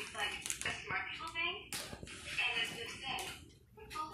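Voices talking indistinctly, with one sharp click about halfway through.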